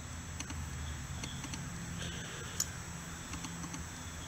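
Quiet steady background hum with scattered faint small clicks and one sharper tick a little past halfway.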